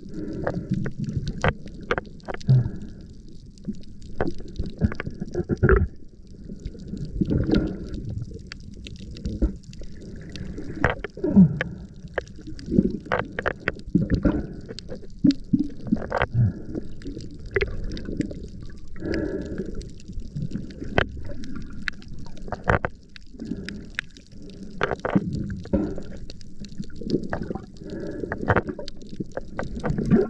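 Muffled underwater sound heard through a camera housing: water washing and gurgling with the diver's movement, with many irregular sharp clicks.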